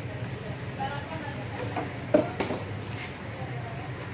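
Indistinct voices over a steady low workshop hum, with one short sharp knock about two seconds in.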